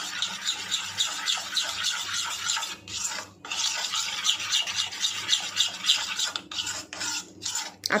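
A metal spoon stirring a thick mayonnaise-based sauce in a bowl: quick repeated wet scraping strokes against the bowl's sides, with a short pause about three seconds in.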